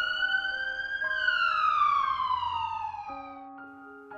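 A single synthesized pitched tone used as a time-skip transition effect: it starts suddenly, rises slightly for about a second, then glides down for about two seconds and fades out. Soft piano music plays under it.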